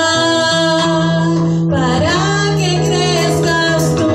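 A woman singing into a handheld microphone, holding long sustained notes and starting a new phrase about two seconds in, over a steady low instrumental backing.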